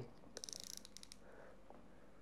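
Faint, quick run of small mechanical clicks from a fishing reel being handled, about half a second in and lasting about half a second.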